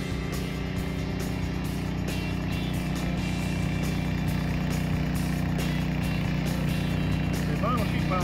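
Diesel engine of heavy construction equipment running steadily at an even pitch while it handles vinyl sheet piling with a key clamp.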